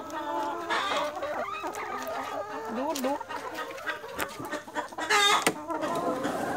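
Chickens clucking close by, several short calls overlapping, with one louder, sharper call about five seconds in.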